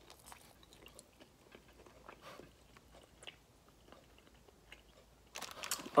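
Faint chewing of a bone-in, sauced chicken wing flat: irregular soft crunches and small mouth clicks as the crispy wing is bitten and eaten.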